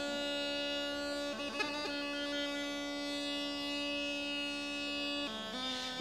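Bulgarian gaida bagpipe playing one long held note over its drone, with a quick ornamented run about a second and a half in and a step down in pitch near the end.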